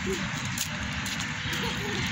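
Steady outdoor background noise: a hiss with a fluttering low rumble, of the kind made by road traffic and wind on a phone microphone.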